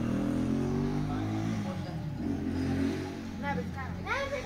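A motor engine running, its pitch sliding down in the first second and then holding steady. A short child's call comes near the end.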